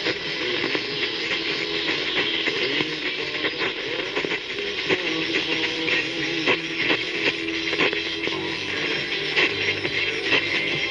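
Medium-wave AM radio reception through a portable radio's speaker: a station's music faint under hiss and dense crackling static, with a thin steady whistle.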